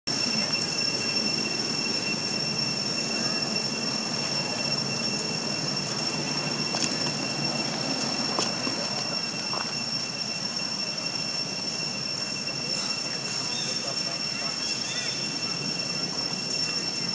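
Outdoor ambience: a steady high-pitched whine over a constant hiss, with a couple of faint clicks about seven and eight seconds in.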